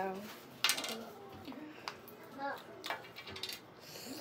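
A series of sharp plastic clicks and clacks as caps are twisted off small plastic bottles and set down on a glass tabletop. The loudest click comes just over half a second in.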